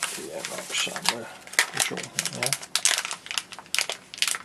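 Plastic bubble wrap and a foil anti-static bag crinkling and rustling in the hands as a small electronics part is unwrapped, in quick irregular crackles.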